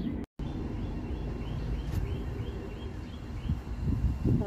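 Outdoor ambience: a faint high chirp repeats about four times a second over a low steady rumble, after a brief cut-out of all sound near the start.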